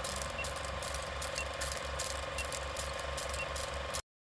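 Old film projector running: a steady rhythmic low clatter with film crackle and a hum, and a short faint high beep once a second, as for a countdown leader. It cuts off suddenly at the end.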